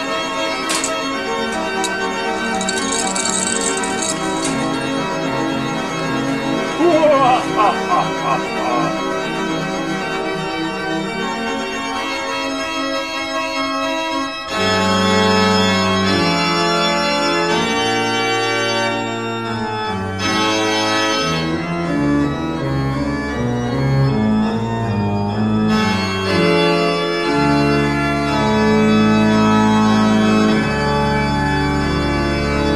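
Organ music of held chords. About halfway through it changes to a fuller passage with a moving bass line.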